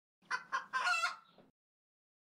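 A rooster crowing once: two short notes, then a longer drawn-out one, over about a second, with dead silence before and after.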